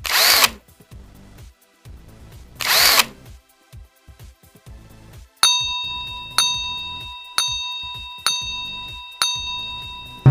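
Two short whooshing sound effects, one at the start and one about two and a half seconds in, as quiz answer options appear. Then, from about five seconds in, a countdown-timer sound effect: five ringing beeps about a second apart, each fading away.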